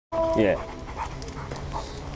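A dog panting softly and rhythmically, after a man's brief spoken 'yeah'.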